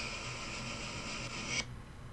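Faint steady hiss from a voice message playing back through a speaker, the tail end after the last words, cutting off suddenly about one and a half seconds in as the message ends. Low room tone follows.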